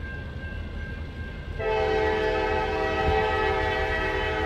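CSX GP38-3 diesel locomotive's air horn sounding one long, steady blast, starting about one and a half seconds in, as the train approaches a grade crossing.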